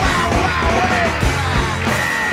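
Loud punk rock song with a yelled lead vocal over a full band, with drums hitting steadily.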